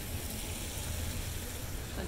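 Steady outdoor city ambience in light rain: a low rumble under an even hiss.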